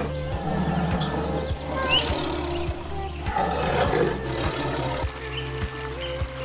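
A tiger calling over background music with a steady beat.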